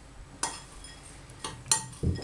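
Metal spoon clinking against a ceramic bowl of chopped walnuts as powdered sugar is spooned in: three short ringing clinks, the last two close together near the end and the last the loudest.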